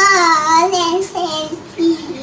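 A young girl's voice reciting lines of a poem in a sing-song, chanting tone, with a short pause or two between phrases.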